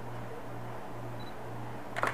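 A steady low hum, ending with a single short click as the camera shutter fires for the shot.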